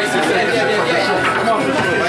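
Chatter of many people talking at once: a steady hubbub of overlapping voices.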